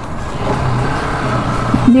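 Riding noise picked up by a phone microphone stuck inside a motorcycle helmet: wind rushing over the mic, with a steady low engine hum coming in about half a second in.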